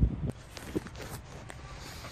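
Faint background of low wind rumble on the microphone, with a few small clicks.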